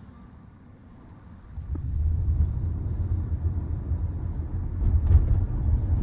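Low, steady road rumble inside the cabin of a 2024 Tesla Model Y, an electric car, rising about a second and a half in as the car gets moving and then holding.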